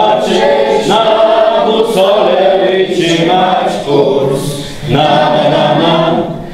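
A group of children's and adults' voices singing a Polish scout song together, with short breaks between lines.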